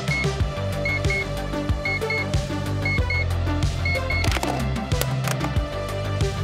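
Digital alarm clock going off at 6:50, beeping in quick pairs about once a second. It sounds over electronic background music with a steady beat.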